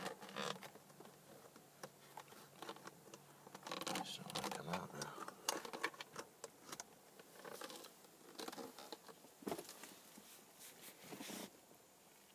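Faint handling noise from working a loosened steering wheel off the steering column to reach the clock spring: scattered light clicks, scrapes and rubs of plastic and metal.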